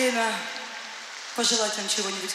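A voice over the concert PA in a large arena, broken by a stretch of hissing crowd noise in the middle before the voice returns.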